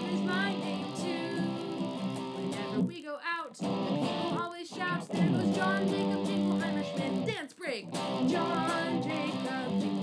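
Squier electric guitar strummed through a small practice amp, with a woman singing a children's song along with it. The sound drops out briefly a few times, near 3, 4.5 and 7.5 seconds in.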